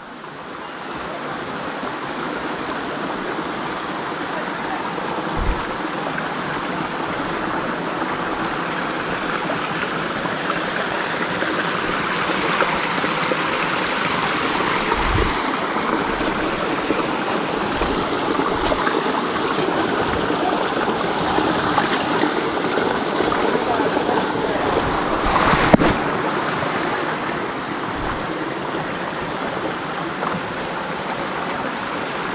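Shallow mountain stream running over rocks, a steady rush of water, with a few low bumps.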